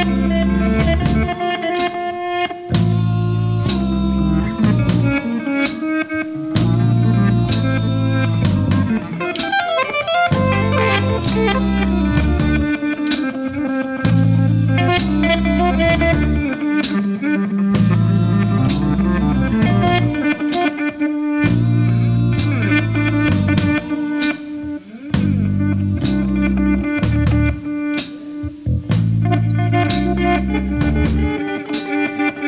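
Live blues-rock band playing an instrumental break: electric guitar over a repeating bass line and a drum kit, with no vocals.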